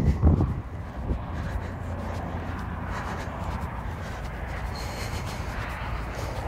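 Outdoor ambience dominated by a steady low rumble, typical of wind on the microphone.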